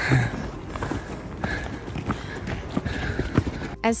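Walking on a hiking trail with a handheld camera: irregular footfalls and knocks and rubbing from the camera being jostled, with faint voices behind.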